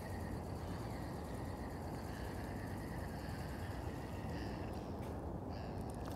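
Quiet outdoor background: a steady low rumble with faint thin high tones wavering above it and no sudden sounds.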